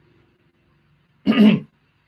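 A single short voiced sound, about 0.4 s long, about a second and a quarter in, in an otherwise near-silent room.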